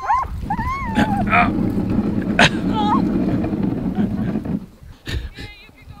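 Sled huskies whining and yipping, eager to run. This is followed by a few seconds of rumbling and knocks as the camera rubs against clothing.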